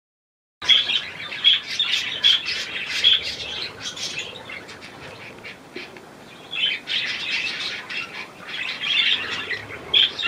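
Budgerigars chattering with quick, short, high chirps, in two busy spells with a quieter stretch between them, the second starting at about six and a half seconds.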